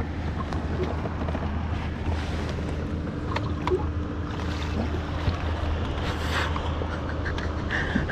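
Steady wind on the microphone and water against a kayak hull, with a few faint knocks from gear.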